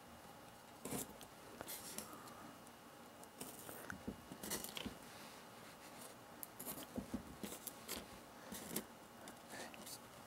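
Faint, irregular small clicks and scrapes of steel T-pins being handled and pushed through flex track into the layout's board to hold the track in place.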